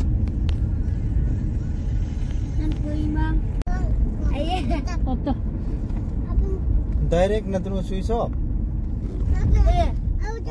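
Steady low rumble of a car's engine and tyres heard from inside the cabin while driving, with people talking at times, about three seconds in and again near seven seconds. The sound drops out for an instant a little before four seconds.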